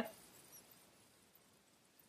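Near silence: faint room tone in a pause between spoken words.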